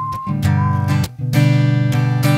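Acoustic guitar strumming chords in an instrumental break of a pop song, with a short pause about a second in.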